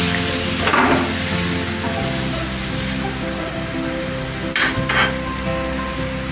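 Chicken sausage pieces sizzling in hot oil in a frying pan, with a few short stirring noises about a second in and again near the five-second mark. Background music with sustained chords plays over it.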